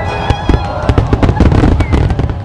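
Fireworks display going off: a dense run of sharp bangs and crackles that comes thickest in the second half.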